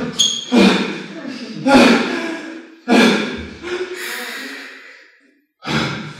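A man's voice making loud wordless vocal outbursts (exclamations, grunts and breathy noises), about five of them roughly a second apart, each starting sharply and trailing off, some with a thud at the onset.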